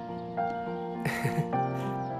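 Soft background music with long held keyboard notes. About a second in comes a short shaky sob from a crying woman, followed by a brief sniff.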